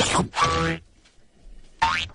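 Cartoon sound effect: a short, boing-like pitched tone lasting about half a second, followed by a near-quiet pause.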